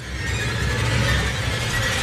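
A low, rumbling noise swells in over about half a second and then holds steady. It is a cinematic sound effect.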